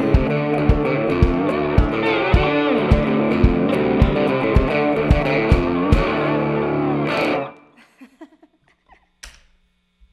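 Band music with no singing: distorted electric guitar and lap steel slide guitar over a steady kick drum beat of about two hits a second. The song stops abruptly about seven and a half seconds in, leaving a few faint knocks and a low hum.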